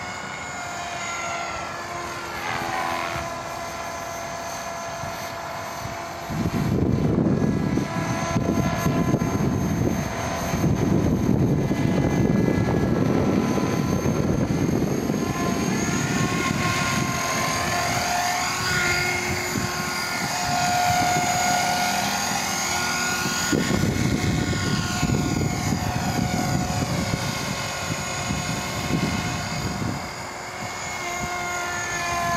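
Radio-controlled Align T-REX 450 Sport electric helicopter in flight: a steady whine from its motor and gears over a dense rotor noise. It gets louder about six seconds in as the helicopter comes close.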